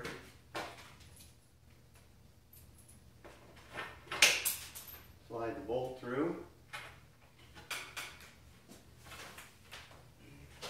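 Wooden frame pieces of a knock-down stand knocking and clicking as they are swung up and fitted together, with irregular light knocks and one sharper knock about four seconds in. A brief vocal sound follows about a second later.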